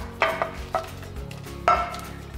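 Soft background music, with a few short knocks and splashes as raw shrimp are slid off a ceramic plate into a pot of simmering tomato broth.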